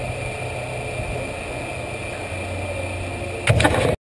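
A steady, low machine hum with a thin, high, steady whine over it, then a short burst of loud knocks about three and a half seconds in.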